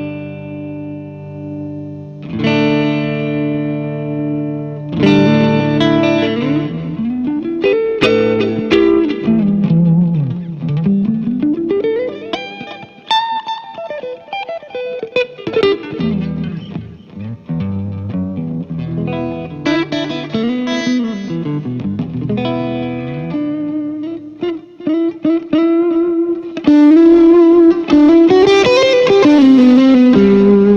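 Electric guitar, a Fender Telecaster, played through an Orange Micro Dark Terror 20-watt hybrid head (tube preamp, solid-state power amp) on its clean tone. It opens with ringing chords, moves into single-note phrases with slides and bends, and gets louder and busier near the end.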